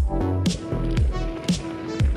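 Background music with a steady beat, about two drum hits a second over a bass line.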